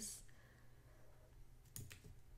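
Near silence, then two quick faint clicks close together near the end: a computer pointing device clicking while a colour is being picked in a drawing program.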